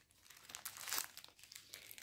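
Small plastic zip-lock bags from a diamond painting kit crinkling faintly as they are handled, loudest about a second in.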